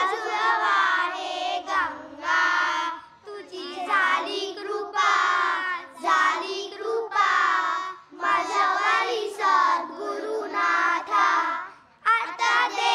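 A group of children singing a bhajan together in unison into stage microphones. The singing goes in phrases of a few seconds, with short breaks about three seconds and eight seconds in.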